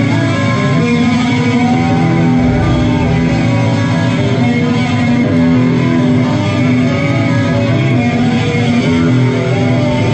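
A live rock band playing loud electric guitars over bass. A lead guitar bends notes up and down near the start.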